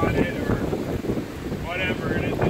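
Wind buffeting the microphone in a steady low rumble, with people's voices talking nearby just after the start and again near the end.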